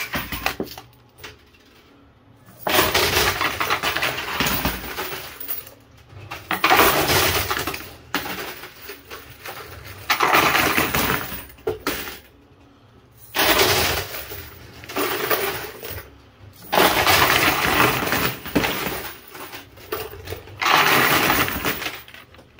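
Coin pusher arcade machine: quarters and plastic casino chips being pushed over the shelf edge and clattering down into the chute, in about six loud bursts of a few seconds each with quieter gaps between them.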